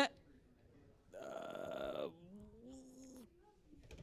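A person's wordless vocal sound: a raspy, buzzy drawl about a second long, then a short wavering hum.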